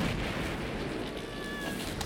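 Cartoon sound effects of ice cracking and rumbling as a split runs up a glacier wall, starting suddenly. Near the end comes a short, high, squeaky cry from the squirrel character.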